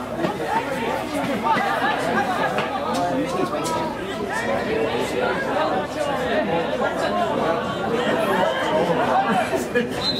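Several people talking over one another in an indistinct babble of voices, with no single voice clear.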